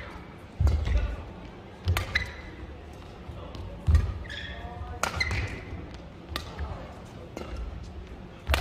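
Badminton rally: about four sharp racket-on-shuttlecock hits, one every second or two, with thuds of footwork and brief squeaks of court shoes on the mat.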